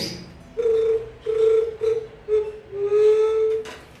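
Mouth-blown juriti bird call imitating a white-tipped dove: a run of low, clear hoots, the last held longest and rising slightly. It is tuned to the call of a female dove.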